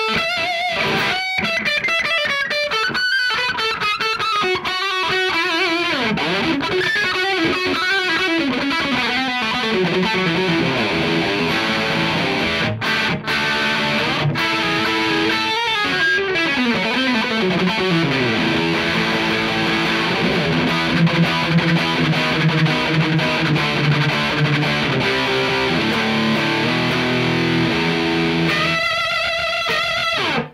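Electric guitar played through a Dawner Prince Electronics Red Rox distortion pedal: a distorted rock demo that opens with single-note lead lines and moves into heavier sustained chords and riffs, with a fast descending run partway through. The playing stops near the end.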